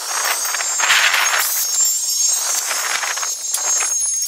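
Cordless drill driving a deck screw into a wooden deck railing: a rough grinding noise as the screw bites into the wood, swelling and easing, loudest about a second in.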